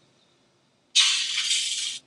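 Test sound of breaking glass played back for a glass break detector: a sudden crash of shattering glass about a second in, bright and high-pitched, lasting about a second before cutting off.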